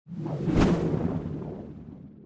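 Intro sound effect for an animated logo: a whoosh that builds to a sharp hit about half a second in, then fades out gradually.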